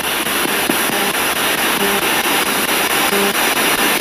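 Radio-sweep spirit box scanning through stations: a steady hiss of static with a faint fast ticking of the sweep. A few brief, faint snatches of broadcast sound come through about half a second, two seconds and three seconds in.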